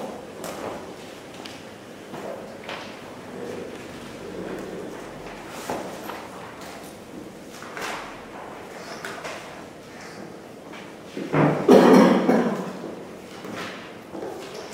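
Pages of a book being turned and small knocks on a wooden lectern, picked up close by its microphone, with a louder burst of noise about three-quarters of the way through.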